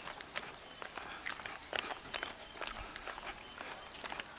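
Footsteps on a concrete path and steps, an uneven run of short taps and scuffs several times a second.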